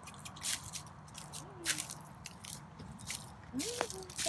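Footsteps crunching through dry leaf litter: a string of irregular, sharp crackles.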